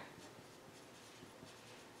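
Faint sound of a pencil writing on paper, very quiet against the room tone.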